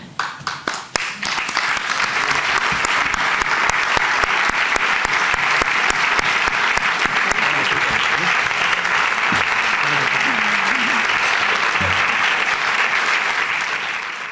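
Audience applauding: scattered claps at first that quickly swell into steady, dense applause, which holds and then fades near the end.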